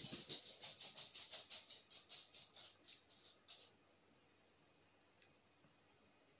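A quick rhythmic run of soft, scratchy rustles, about four or five a second, fading away and stopping about three and a half seconds in.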